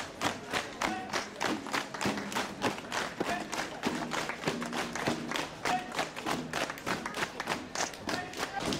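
Marching footsteps of a column of Roman-soldier re-enactors in sandals on cobblestones: a fast, even run of sharp knocks, about four or five a second.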